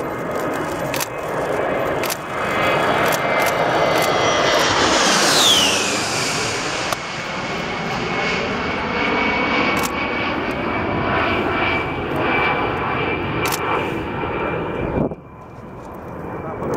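A USAF A-10 Thunderbolt II's twin General Electric TF34 turbofans passing low overhead. It makes a high whine that falls steeply in pitch as the jet goes by, loudest about five seconds in, then settles into a steady whine as it flies away. The sound drops away abruptly about a second before the end.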